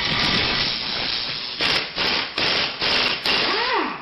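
Animated logo sound effect: a dense rushing whoosh, then about five quick surges of noise a little under half a second apart, ending in a whoosh that sweeps down in pitch.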